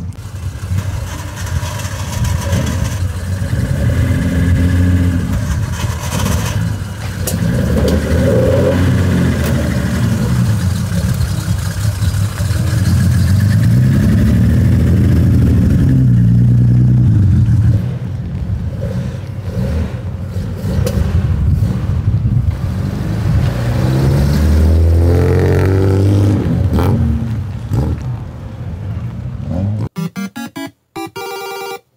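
Classic Nissan Skyline C110 'Kenmeri' engine revving up and easing off several times as the car drives through a lot. It is loudest and held highest for several seconds in the middle, then drops away suddenly.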